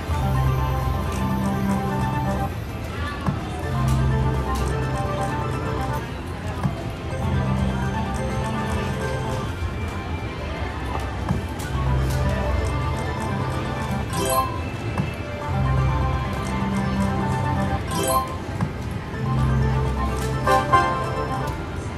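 Kitty Glitter video slot machine playing its reel-spin music and chimes over repeated spins, the pattern coming round about every four seconds, with sharp clicks as the reels land. Casino background of other machines and voices underneath.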